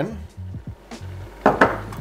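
A small glass dish knocking lightly against a glass bowl as flour is tipped into milk, with a couple of sharp clinks near the end. Quiet background music runs underneath.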